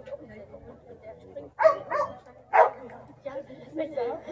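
A dog barking about three times in quick succession, about a second and a half to nearly three seconds in, over low background talk.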